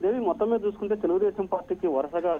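Speech only: a newsreader's voice reading a news report, with no other sound.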